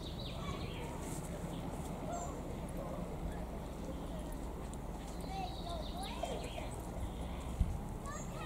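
Chinook tandem-rotor helicopter flying at a distance, its rotors making a steady low beat, with birds chirping over it.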